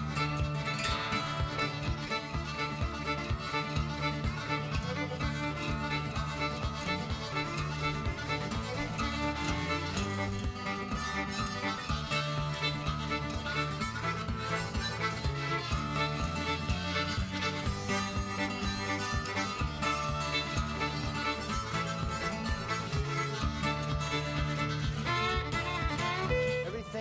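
Instrumental background music led by a fiddle, with a steady beat.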